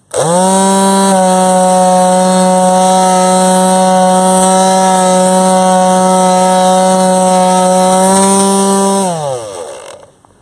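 Corded electric detail sander with a triangular pad switched on, its motor running with a steady, loud whine while pressed against the hard skin of a bare heel, then switched off and spinning down near the end.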